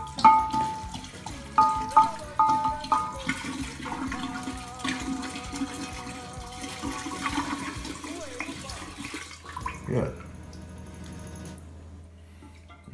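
Grain alcohol glugging and splashing as a glass bottle of 190-proof Everclear is poured upside down into a glass jar of lemon zest.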